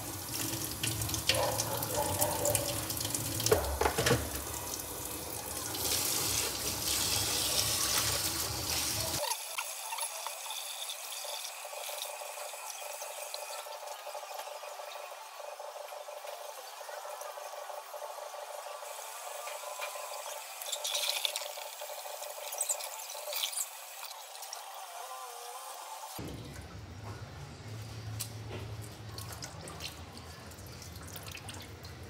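Kitchen tap running into a stainless steel sink, with splashing and scrubbing as a cap is rinsed and brushed under the stream. The sound is fuller for the first several seconds, then thinner and quieter for most of the rest.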